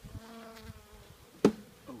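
Honeybees buzzing close by, their hum sliding up and down in pitch. About one and a half seconds in comes a single sharp crack as the wooden inner cover, glued down with burr comb, is worked loose.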